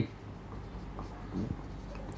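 Marker pen writing on a whiteboard: a few faint strokes over a low, steady hum.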